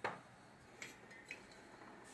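Faint clicks and light knocks of small household objects being picked up and handled: one sharper click at the start, then two small ticks about a second in.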